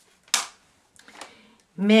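A sharp click from handling a makeup case, about a third of a second in, then a fainter click a second later.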